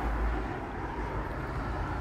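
Steady outdoor background noise: a low rumble under an even hiss, a little stronger in the first half second.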